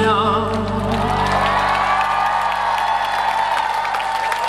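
A live band's final chord ringing out and fading over a few seconds, with a wavering held note at the very start. From about a second in, an audience cheers and applauds at the end of the song.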